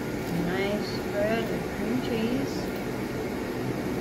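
Indistinct voice, a few short murmured sounds, over a steady background hum.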